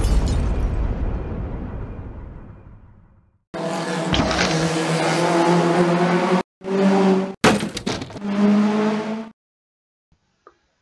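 Crash sound of the Lego race car hitting the barrier, dying away over about three seconds. Then a car engine sound in three stretches, steady in pitch with the last a little higher, broken by a couple of sharp clicks, before it cuts off.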